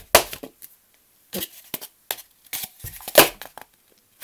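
Cup-song pattern played on a foam cup and a wooden tabletop: hand claps, taps on the table and the cup knocked down and picked up, in uneven strikes with a pause of about a second near the start. The loudest knock comes near the end. The rhythm is halting, with mis-hit beats while the pattern is still being learned.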